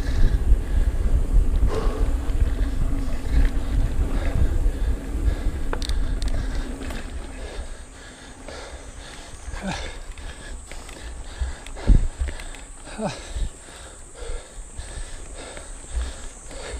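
Ibis Mojo HDR 650 mountain bike riding down a dirt trail: wind rumble on the chest-mounted camera with tyre noise and rattling from the bike, loud through the first half, then quieter with scattered knocks and one sharp thump about twelve seconds in.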